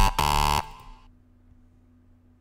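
A bright synthesizer lead note from a ReFX Nexus 2 lead preset, held with a brief break, cutting off about half a second in and fading away by one second. After that, only a faint low hum.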